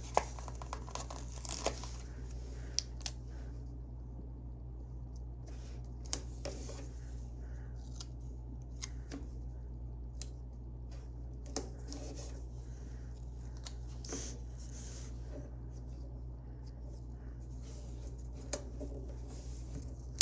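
Scattered soft rustles, clicks and taps of paper stickers being peeled from a sticker sheet and pressed onto planner pages, over a steady low hum.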